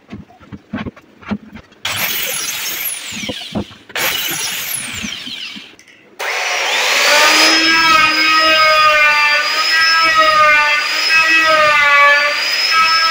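A few light knocks, then two short bursts of a handheld circular saw cutting wood, each starting and stopping abruptly. From about six seconds an electric plunge router runs loudly with a steady high whine that wavers slightly as it carves into the wood.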